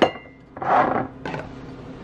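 Glass bottles clinking together in a drawer as a sauce bottle is pulled out. A sharp clink rings briefly at the start, then the bottles shift and rub against each other for about half a second.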